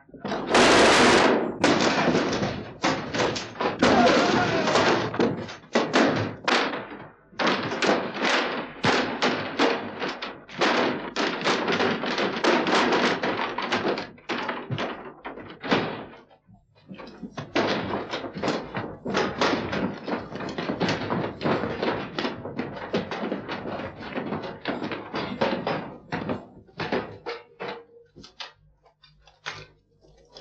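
Loud, continuous din of men shouting, mixed with many thuds and knocks, with a short lull a little past halfway.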